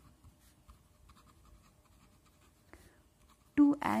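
A pen writing on paper: faint, scattered scratching strokes. Speech starts near the end.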